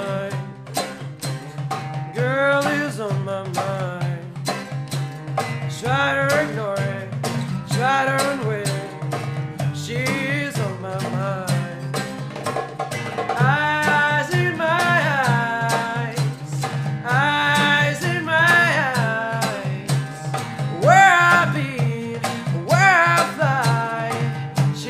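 A song played on acoustic guitar with a darbuka (goblet drum) keeping a steady hand-drum rhythm, and a man singing over it.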